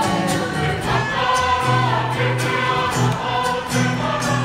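A large Māori performance group singing together in chorus, with guitar accompaniment and a steady rhythmic beat.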